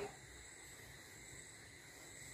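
Near silence: faint steady room tone with a low hiss, and no distinct marker strokes.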